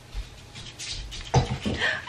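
A bare toe knocking against a bed frame leg with a sudden thump about a second and a half in, followed by a short pained cry.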